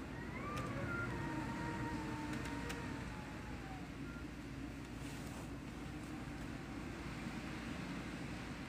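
A distant siren wailing faintly: its pitch rises about half a second in, then slowly falls away over the next couple of seconds. Under it runs a steady low rumble of background noise.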